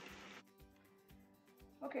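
Spam slices sizzling in a frying pan as a soy sauce and sugar glaze cooks down and thickens. The sizzle cuts off suddenly less than half a second in. After it there are only faint steady tones.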